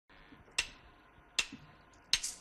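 Two sharp clicks a little under a second apart, counting in a live rock band before the song starts.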